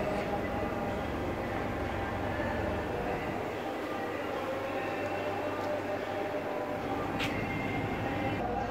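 Steady low mechanical hum and rumble filling a large indoor space, with a brief click about seven seconds in.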